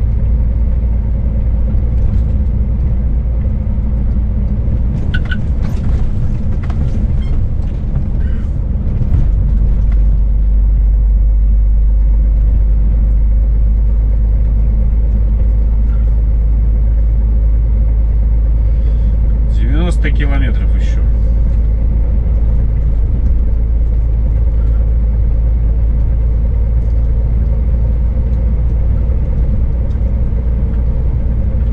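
Scania S500 heavy truck driving on the open road: a steady, loud low rumble of engine and tyres that grows stronger about nine seconds in.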